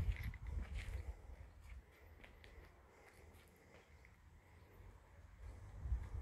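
Faint footsteps on concrete: low thuds in the first second or so, a quiet stretch, then the steps start again at the very end.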